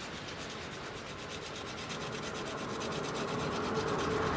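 A piece of deer antler rubbed steadily back and forth on a wet whetstone, a continuous gritty scraping as the antler is ground into a paper-knife blade.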